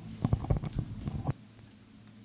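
Handheld microphone handling noise: a run of soft low thumps and knocks as the mic is moved, then the low background hum of the mic channel drops off suddenly about a second in.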